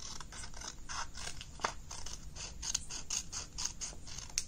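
Scissors cutting paper along a folded crease: a quick run of short snips, several a second.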